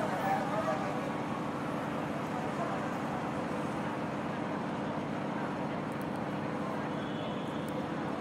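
Railway-platform ambience: a steady hum of distant traffic with indistinct murmuring voices in the background.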